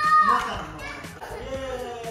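A young child's high-pitched squeal, held for about half a second at the start and then falling away, followed by softer children's voices.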